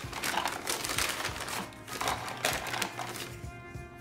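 Brown paper bag rustling and crinkling as a hand rummages inside it, dying down about three seconds in, with soft background music underneath.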